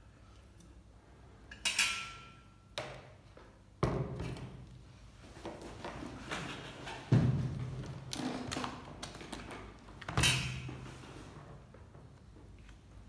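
Tabletop handling noise: a series of sharp knocks and thuds, about five in all, the loudest about seven seconds in, with rustling between them as a cardboard tobacco box is moved and opened.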